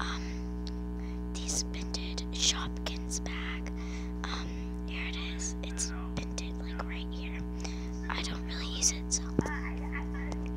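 Small plastic toy accessory handled and tapped close to the microphone: scattered short rustles, scrapes and clicks, a few sharper taps near the end, over a steady background drone.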